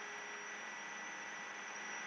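Faint, steady background hiss with electrical hum and a thin high whine, the noise floor of the narrator's microphone setup between words.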